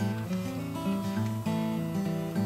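Background acoustic guitar music, single plucked notes ringing on and changing every fraction of a second.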